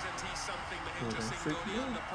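Cricket TV broadcast playing: a commentator talking quietly over the steady noise of a stadium crowd.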